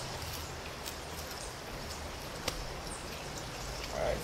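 Shallow river running over stones, a steady rushing hiss, with a single sharp click about two and a half seconds in.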